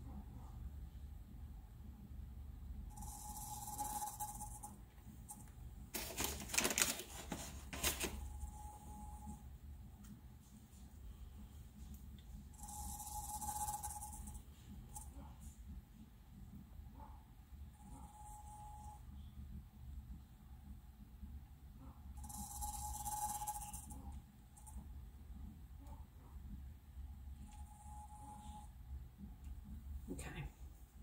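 Electric cup turner slowly rotating a tumbler: a low steady hum, with a short hissing sound that comes back about every five seconds as it turns. A quick run of clicks about six to eight seconds in.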